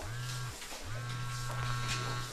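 Cell phone vibrating with an incoming call: a short buzz, then a longer one starting just under a second in.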